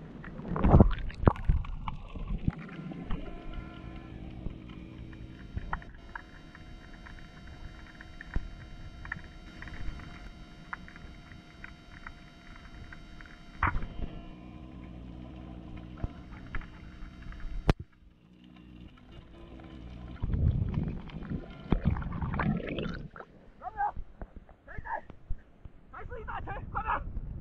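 Muffled underwater sounds of a spearfishing dive heard through a camera's waterproof housing. Heavy low knocks open it, a steady hum with several tones runs through the middle, a sharp crack comes a little after halfway, and more muffled knocking and thumping follow near the end.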